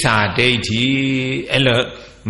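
A monk's voice reciting in a slow chant: long syllables held on a nearly level pitch, broken by short pauses.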